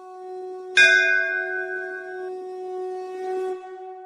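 A conch shell (shankh) blown in one long steady note, with a temple bell struck once about a second in and left to ring out; the conch note stops shortly before the end.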